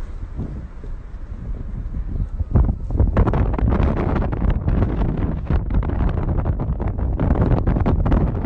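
Wind buffeting a phone's microphone from a moving car, over the low rumble of the car driving. The buffeting grows much louder about two and a half seconds in.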